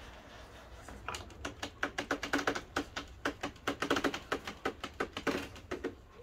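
Absima Sherpa RC scale crawler making rapid, irregular clicking and clattering as its tyres and chassis knock on wooden boards while it crawls off a sloped board onto a plank ledge. The clicks start about a second in and stop just before the end.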